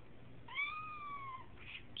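A cat's single high, squeaky meow, about a second long, starting about half a second in and arching gently up then falling in pitch: a cat asking for food.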